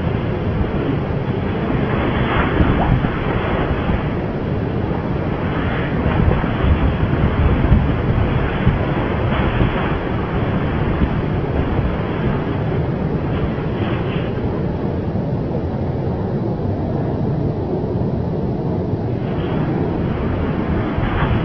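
Steady rumbling noise with no clear pitch, like wind buffeting a microphone.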